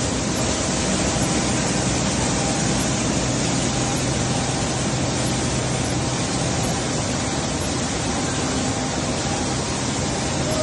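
ZAAMP oil expeller presses and their electric motors running: a steady, dense machine noise with a low hum underneath.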